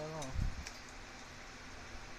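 A short low thump about half a second in, with a few faint clicks: handling noise while working on the garage door's spring hardware.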